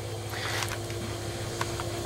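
Steady low hum, with a faint brief rustle about half a second in.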